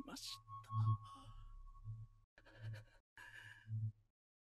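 Quietly played anime soundtrack: soft character dialogue over one steady high tone that stops a little over two seconds in.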